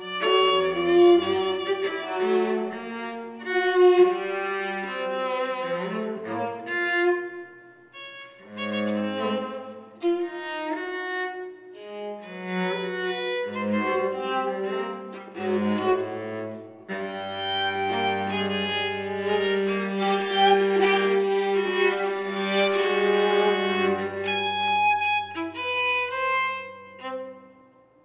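String quartet of two violins, viola and cello playing, in overlapping lines broken by brief pauses, with the cello holding low notes underneath. The playing thins out and stops about a second before the end.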